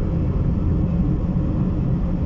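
Steady low rumble of a moving car's engine and tyres on the road, heard from inside the cabin.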